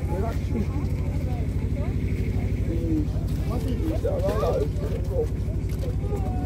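An engine idling steadily, a low, even throb, with people talking in the background.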